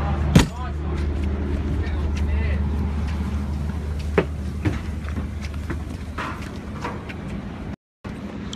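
A steady low machine hum, which fades as the walker moves away. About half a second in there is a sharp knock, like a door banging, and a few seconds later a couple of footsteps on metal stairs.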